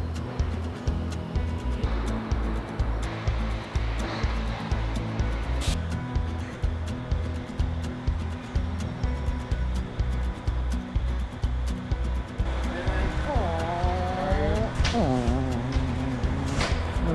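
Background music with a steady bass beat; a voice comes in over it near the end.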